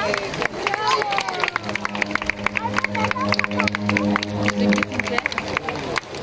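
Audience at an outdoor show: voices and a quick run of sharp claps, over a held low musical tone that starts about a second and a half in and stops near the end.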